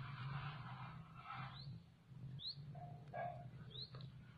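Three short rising bird chirps spaced about a second apart, over soft rustling of nylon snare line being untangled by hand.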